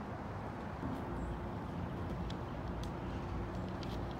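Steady low outdoor rumble, with a faint hum coming in about a second in and short high chirps or ticks from about two seconds in.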